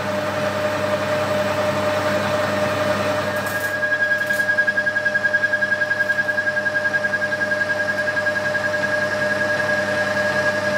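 Metal lathe running, turning a 316 stainless steel bar with a steady whine over a low hum; a second, higher whine comes in about three seconds in.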